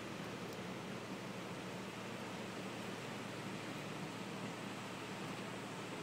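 Steady rushing noise of heavy rain and floodwater, even and unbroken, with a faint low hum under it.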